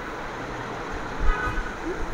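Cloth rustling and low bumps as a lawn dress piece is handled, over steady background noise, with a brief faint high tone a little past halfway.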